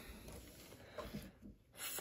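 Faint rustle and a few light ticks of trading cards being handled in the hands.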